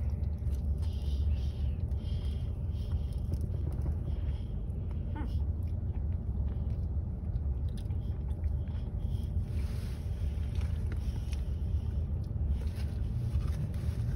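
A person biting into and chewing a McDonald's McRib sandwich, the chewing faint over a steady low rumble inside a car's cabin.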